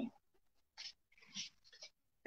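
Faint squeaks of a marker pen on a whiteboard: three short strokes, the first about a second in.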